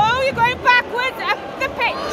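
Football crowd in the stadium stands: nearby spectators shouting in a string of short, high-pitched calls over general crowd babble.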